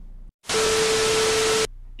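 A burst of TV-style white-noise static, about a second long, with a steady tone running through it, starting and cutting off abruptly: a sound effect marking the cut between clips.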